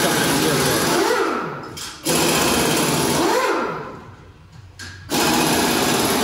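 Steady whirring noise of a small machine running. It breaks off sharply for a moment about two seconds in, fades away over the next couple of seconds, and comes back suddenly near the end.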